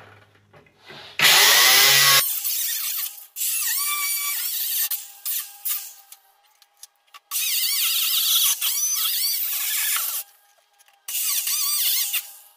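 Angle grinder with a cut-off wheel cutting through a car's sheet-metal hood in several runs of one to three seconds, stopping briefly between them. The first run, about a second in, is the loudest.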